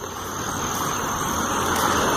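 A road vehicle passing close by: a steady rush of tyre and engine noise that slowly grows louder.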